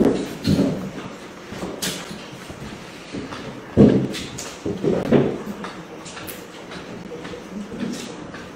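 Irregular rustles and light knocks of leafy stems and foliage being handled and pushed into a floral arrangement on a table.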